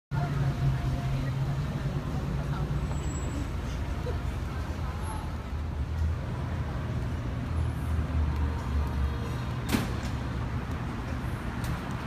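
City street traffic: vehicle engines running and passing, a steady low rumble, with one sharp knock about ten seconds in.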